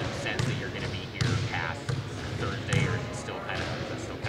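Basketballs being dribbled on a hard court in the background, a string of irregular bounces about two a second, with faint voices.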